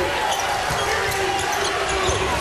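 Arena game noise from a college basketball game: crowd and court sounds, with a steady held tone through the second half.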